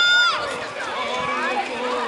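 Many children's voices shouting and chattering at once, with one loud high-pitched shout right at the start.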